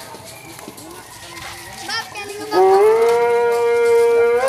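Low crowd voices, then about two and a half seconds in a loud, long held note starts, sliding up briefly before holding one steady pitch.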